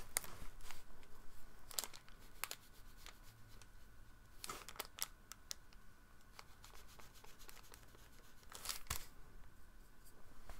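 Faint, scattered scratches and clicks of a watercolour brush working on cold-press watercolour paper, with a few longer scratchy strokes about two, five and nine seconds in.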